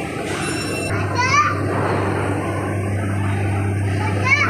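A child's high voice calls out briefly about a second in, over the steady low hum and hubbub of an indoor children's play area. A brief high steady tone sounds just before it.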